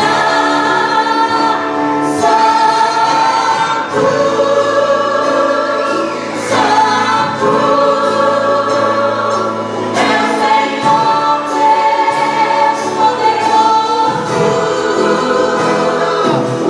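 Live gospel worship music: a group of women singing together in held notes, backed by a band.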